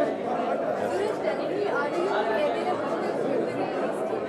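Indistinct chatter of several people talking at once in a busy hall, with no single clear voice.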